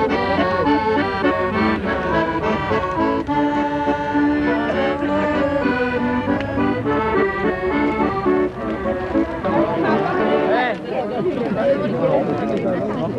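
Accordion playing a tune, its notes and chords changing step by step. Voices of people talking come in over it near the end as the playing fades.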